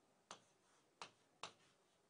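Near silence broken by three faint, short clicks: a stylus tapping on a drawing tablet while a diagram is sketched.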